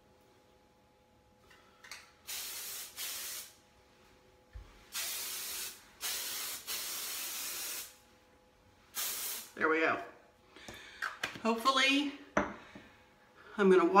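Redken Triple Take 32 aerosol hairspray sprayed onto hair in five hissing bursts, short ones of about half a second and a long one of about two seconds past the middle.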